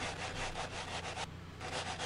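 Sandpaper on a hand sanding block rubbing back and forth in quick strokes across a guitar body's top, levelling the edge binding flush with the wood.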